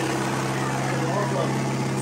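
A steady low mechanical hum, like an idling engine or a running ventilation unit, with faint voices over it.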